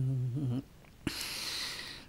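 A man's low chanting voice, singing an icaro, holds the last note of a phrase and stops about half a second in. After a short silence and a small click, a breathy hiss runs for about a second: a breath taken between phrases.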